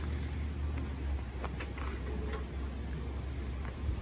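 A steady low rumble with a few faint light clicks.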